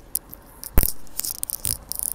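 A single sharp knock a little under a second in, with lighter clicks and scuffs around it.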